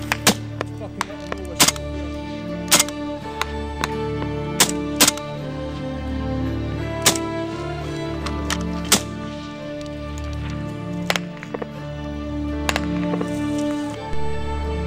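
Background music with sustained chords, and over it single gunshots crack at uneven intervals, about nine in all.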